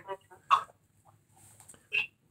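Two brief chuckles, one about half a second in and a shorter, higher one near the end, with quiet between.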